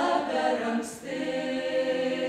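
Folk ensemble singing a Lithuanian folk song a cappella, several voices together. A short break about a second in, then the voices hold long, steady notes.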